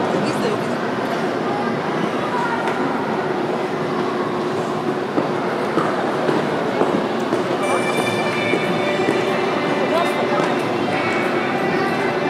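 Indistinct chatter of spectators echoing around an indoor ice rink, over a steady din. About eight seconds in, held musical tones come in over it, the skater's program music.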